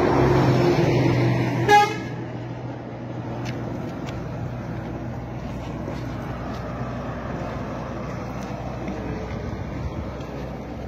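A road vehicle passing close by, its engine loudest in the first two seconds, with one short horn toot just before two seconds in. After that, steady road noise with a few small clicks.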